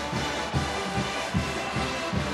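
Band music with brass instruments playing.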